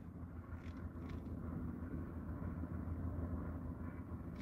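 Low steady background rumble inside a car cabin, with two faint ticks within the first second or so.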